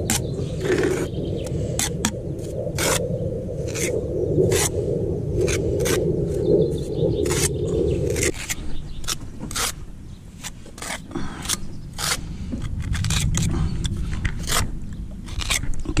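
Steel pointing trowel scraping lime mortar off a larger trowel and pressing it into brick joints, in many short, sharp strokes. A steady low hum runs underneath and cuts off suddenly about eight seconds in.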